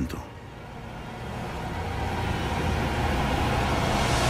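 A low rumble under a hissing swell that builds steadily louder: a film-trailer sound-design riser.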